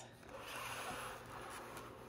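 Faint rustling and rubbing of a hand handling a cardboard-and-plastic doll box, lasting about a second and a half.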